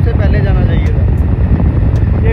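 Wind buffeting the microphone on a moving motorbike: a loud, unbroken low rumble, with a man's voice talking over it in the first second.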